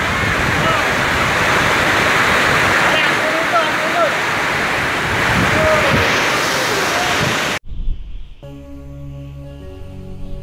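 Typhoon wind and heavy driving rain, a loud, dense, steady rush of noise, hitting the microphone with faint short shouts in it. It cuts off suddenly about three-quarters of the way through, and soft music with long held notes follows.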